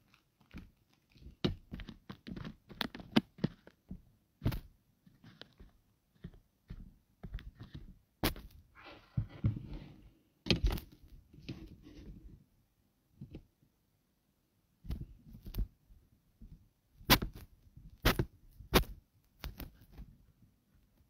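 Handling noise on a phone's microphone: irregular taps, knocks and small thumps, with a short stretch of rustling about nine seconds in and a lull a little after the middle.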